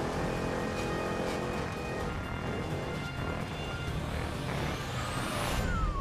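Engine of an old mid-century car running hard as it drives up to a snow jump, heard from inside the cabin, with background music. Near the end comes a rising high sweep and a heavier low rumble.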